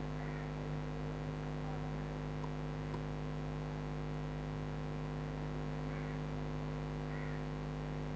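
Steady electrical mains hum in the recording, a constant low buzz with several overtones, with a few faint ticks.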